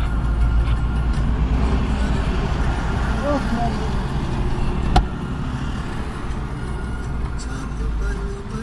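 Steady low rumble of road and engine noise inside a car being driven along a town road, with one sharp click about five seconds in.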